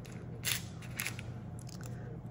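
Light clicks and taps of thin chipboard word pieces being handled and set down on a wooden tabletop, the sharpest tap about half a second in, over a low steady hum.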